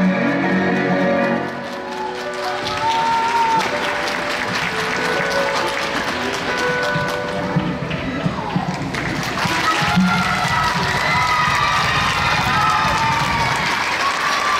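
A skating programme's recorded music ends about a second and a half in. The rink audience then applauds, with voices calling out over the clapping.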